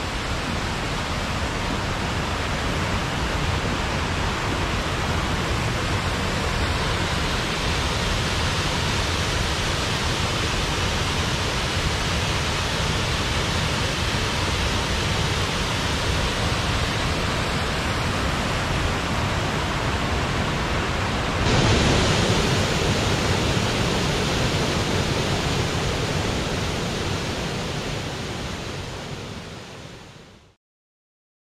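River running high with a lot of water, rushing over rocks in a steady wash. About two-thirds of the way through it jumps louder and brighter as a waterfall takes over, then fades out at the end.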